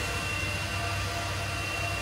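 Cooling fans of ASIC crypto miners and the shed's exhaust fans running: a steady whooshing hiss with a thin, constant high whine and a low hum underneath.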